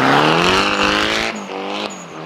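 Drift car spinning its rear tyres in a burnout donut, the tyres squealing: the engine revs climb for just over a second, drop suddenly, then climb again.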